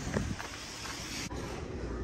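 Steady outdoor background noise: an even hiss over a low rumble, with no distinct events and a brief drop-out a little past the middle.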